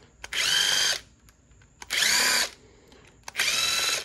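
Bosch 12-volt cordless driver spinning in three short runs, each under a second, with a high motor whine that rises as each run starts, as it backs out the small screws holding the cover on a Walbro carburetor.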